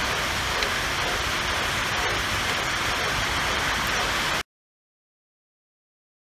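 Steady rain drumming on a roof, an even hiss heard through the workshop, which cuts off abruptly about four and a half seconds in, leaving silence.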